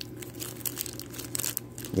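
Thin clear plastic bag crinkling in short, irregular rustles as fingers open it and work the small figure parts out.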